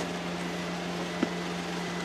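Steady mechanical hum with hiss, holding one constant low tone, and a single short click a little after a second in.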